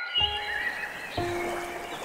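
Soft piano notes begin just after the start, with another note struck about a second in, over high, whistled bird calls that glide in pitch and are plainest in the first half.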